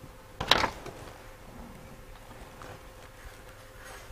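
A single short bump or handling knock about half a second in while a jumper wire is soldered onto a transistor radio's circuit board, over a faint steady hum.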